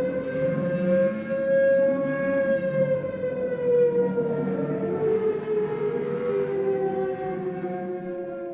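Recording of a WWII-style air raid siren wailing, its pitch slowly rising and then falling.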